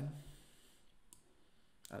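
Two computer mouse clicks over faint room tone, a faint one about a second in and a sharper one near the end.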